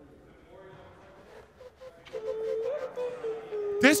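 Faint background voices, then from about two seconds in a voice holds one long, steady hummed note; close speech begins right at the end.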